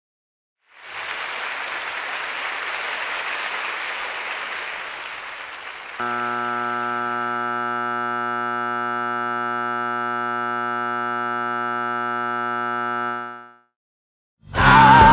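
An electronic sound effect. It starts as a steady rushing hiss, and about six seconds in it switches abruptly to a loud, unwavering buzzing tone with many overtones. The tone holds steady and fades out near the end.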